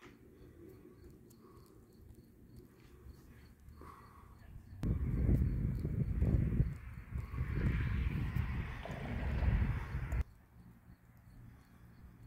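Wind buffeting a handheld microphone outdoors: faint at first, then loud gusty rumbling for about five seconds from about five seconds in, cutting off abruptly near the ten-second mark.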